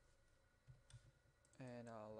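Near silence with a couple of faint computer-mouse clicks just under a second in. Then a man's drawn-out, steady-pitched hesitation sound ("uhh") starts near the end.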